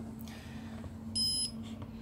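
IP-Box 3 giving one short electronic beep, about a third of a second long, a little over a second in: the signal that it has detected the iPhone 7 just plugged into it.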